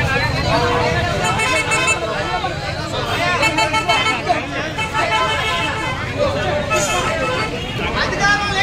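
Many people talking at once in a crowd, over steady street traffic noise, with a vehicle horn sounding briefly around the middle.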